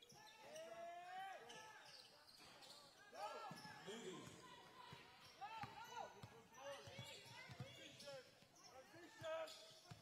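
Faint basketball game sounds on a hardwood court: the ball dribbling in short knocks, sneakers squeaking as players cut, and players calling out.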